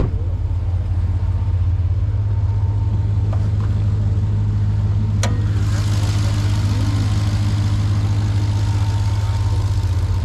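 Jeep Trackhawk's supercharged 6.2-litre Hemi V8 idling steadily. A sharp click about halfway through is followed by a steady hiss.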